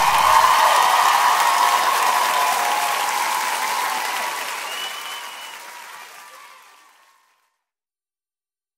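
Audience applauding and cheering, with a brief whistle about five seconds in. The applause fades steadily away over about seven seconds.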